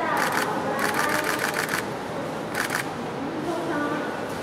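Camera shutters firing in rapid bursts, about ten clicks a second, in three runs over the first three seconds, with voices in the background.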